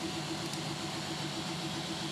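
Steady background hiss with a faint, evenly pulsing hum: room tone in a pause between speech.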